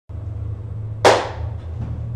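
A single sharp smack, like a clap or a hard knock, about a second in, with a short room echo, over a steady low hum.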